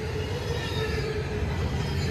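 Double-stack intermodal well cars rolling past on the rails: a steady low rumble from the wheels and trucks, with a faint thin squealing tone over it, growing louder.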